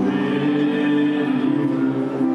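Electronic keyboard played live, holding sustained chords that change to new notes a couple of times.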